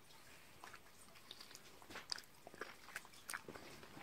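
Faint, scattered wet clicks of a Cane Corso's mouth and jaws as it mouths a strawberry.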